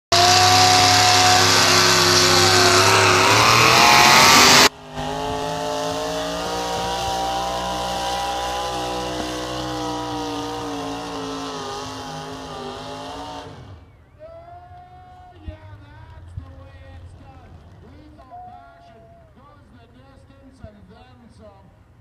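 A pulling tractor's engine running flat out, very loud, as it hauls a weight-transfer sled down the track. The level drops abruptly about five seconds in; the engine keeps running, its pitch slowly falling, and dies away about two-thirds of the way through, leaving voices.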